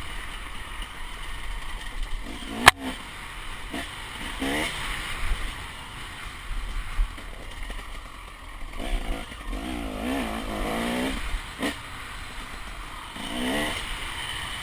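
KTM 300 two-stroke enduro motorcycle engine being ridden off-road, heard from a helmet camera: the revs rise and fall in repeated bursts of throttle, the longest a couple of seconds long about two-thirds of the way through. Two sharp knocks cut in, one about three seconds in and one near the end.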